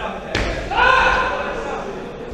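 A single sharp thump in a boxing ring, a blow landing as the two boxers close in, about a third of a second in, followed by a loud, drawn-out shout that fades over the next second.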